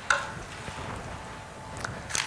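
A pause in a small room: faint steady room hum and hiss, with a short rustle just after the start and a faint click near the end.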